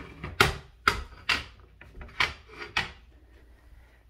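A run of about seven sharp knocks and clacks at irregular intervals, hard objects being handled and set down, fading out near the end.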